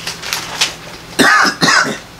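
A man coughing: two loud hacks in quick succession about a second in, each with a rough, voiced edge.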